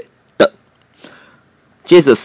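A narrator's voice speaking in Chinese, broken by a pause of about a second and a half that holds one short vocal sound near its start and a faint breath in the middle.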